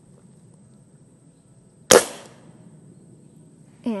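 Umarex Komplete NCR .22 air rifle, powered by a nitrogen cartridge, firing a single shot about two seconds in: one sharp crack that dies away quickly.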